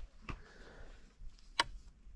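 Two faint sharp clicks over low background noise, the louder one about one and a half seconds in.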